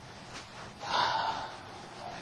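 A person's short, breathy gasp about a second in.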